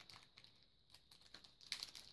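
Faint crinkling and small clicks of a Pokémon booster pack wrapper picked at by fingers, which are failing to tear it open by hand, with a slightly louder cluster of crackles near the end.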